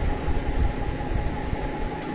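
Steady low rumble with a hiss over it, an unbroken background noise with no distinct events.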